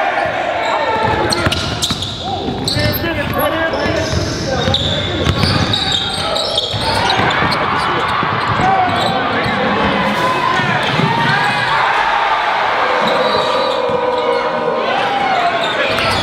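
Live basketball game sound in a gym: a ball bouncing on the hardwood amid indistinct shouting voices, echoing in the large hall.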